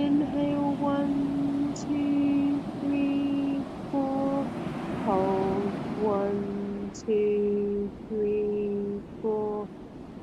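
Soft, slow background music: a gentle melody of long held notes over a sustained lower note, with a faint wash of surf around the middle.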